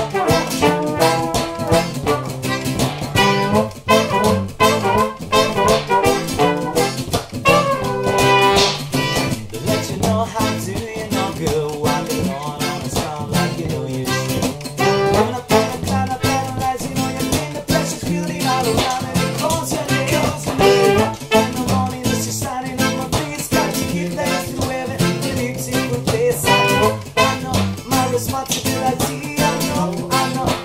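Acoustic ska band playing: trombone and trumpet over a steadily strummed acoustic guitar, with singing near the end.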